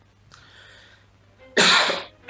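A person coughing: one loud, harsh cough about one and a half seconds in, after a faint breathy sound.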